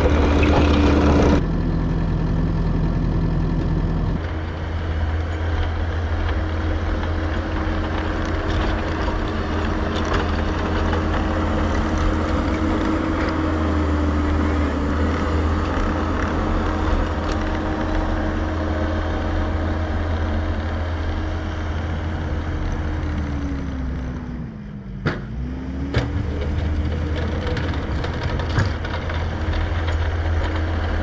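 Kubota SVL75-2 tracked skid steer's diesel engine running steadily as it pushes snow with a sectional pusher. It is loudest for the first few seconds while close by, then holds a steady note; about 25 seconds in, the engine note dips in pitch and climbs back.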